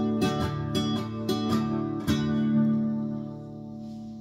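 Acoustic guitar strummed through the closing bars of the song: a handful of quick strums, then a final chord about two seconds in that is left to ring and fade away.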